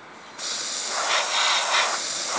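Airbrush with a gravity-feed paint cup spraying paint, its compressed-air hiss starting suddenly about half a second in and then holding steady, with the air pressure set at about 20 to 25 psi.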